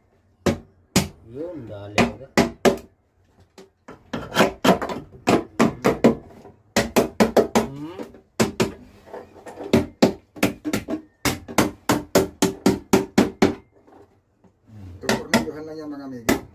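Sharp knocks in quick runs of several a second, with people talking underneath.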